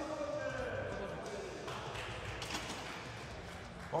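Voices in a large hall calling out to cheer on a bench press, trailing away, with a couple of sharp metallic knocks typical of a loaded barbell being set back into the rack hooks.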